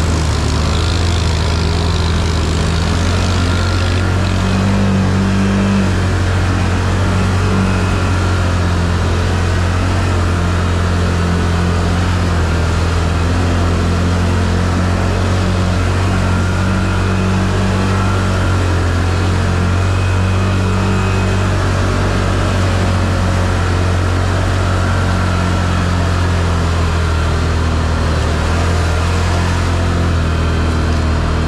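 Can-Am ATV engine running steadily under load as it drives through shallow floodwater, with water splashing and spraying around the wheels.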